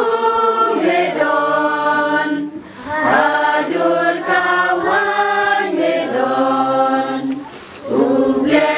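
A group of children singing together, likely reading the words from books, in long held phrases with short pauses about two and a half seconds in and again near the end.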